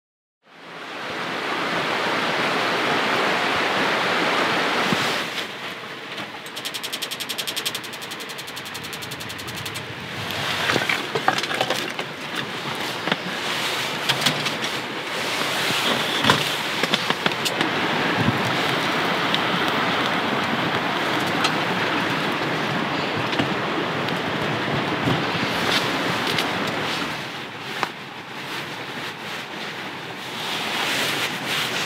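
Steady rushing of a mountain stream. From about ten seconds in, scattered knocks and clicks of split firewood being handled and fed into a small wood stove sound over it.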